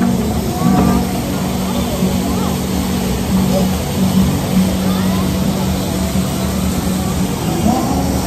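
Outdoor city ambience: people's voices in the background and road traffic, under a steady low hum.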